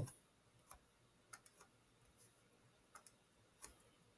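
Near silence with a few faint, scattered clicks from picking a pen colour on the computer.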